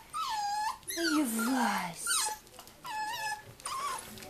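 Puppies whining: a series of short, high whimpers that bend up and down in pitch, coming again and again.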